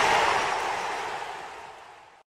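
Dying tail of the outro logo sting: a broad wash of noise, left over from its music and hits, fading away steadily to nothing.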